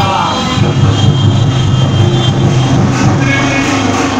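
Motorcycles and jeeps of a convoy driving past close by, their engines making a loud, steady drone.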